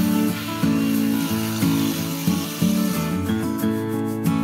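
Strummed acoustic guitar background music with a steady chord pattern. Under it, for the first three seconds or so, the hiss of a cordless circular saw cutting through a wooden board.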